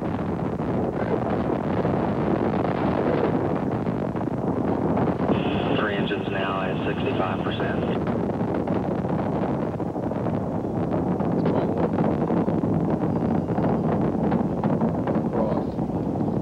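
Space Shuttle Atlantis climbing on its solid rocket boosters and three main engines: a steady, deep rocket rumble heard from the ground. From about ten seconds in it turns to a grainy crackle.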